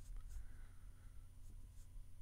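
Quiet room tone with a faint steady electrical hum and a few soft, faint ticks.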